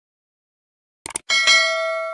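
Notification-bell sound effect from a subscribe-button animation: two quick clicks about a second in, then a bell ding struck twice in quick succession and left ringing.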